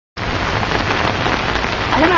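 A steady, even rush of water noise with no distinct drops or strokes, starting abruptly as the clip opens.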